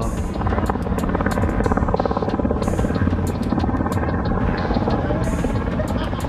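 A car engine running close by with a low, steady throbbing rumble, with music playing along with it.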